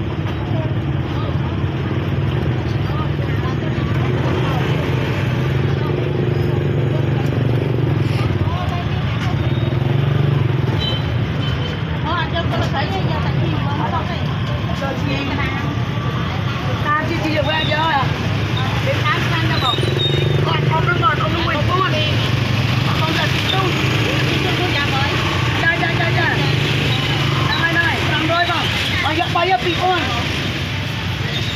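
Busy market street ambience: a steady low rumble of traffic under people talking, with the voices clearer for stretches in the middle and near the end.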